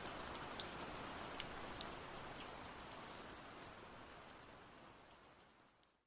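Steady rain falling with scattered sharp drop ticks, gradually fading out and gone about five seconds in.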